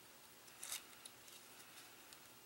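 Near silence, with one faint brief rustle of tissue paper being trimmed from a wing charm about a third of the way in.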